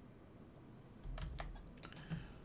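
A few short, sharp computer clicks at the keyboard, starting about a second in after a quiet stretch, with a low bump as they begin.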